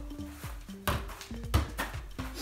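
Background music with held notes, under three sharp thuds of a soccer ball being juggled: one a little under a second in, then two close together near the end, the middle one the loudest.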